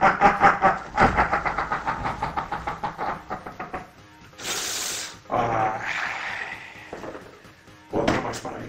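A man's long, theatrical villain laugh in rapid 'ha-ha-ha' pulses for the first few seconds. It is followed about four and a half seconds in by a short whooshing sound effect.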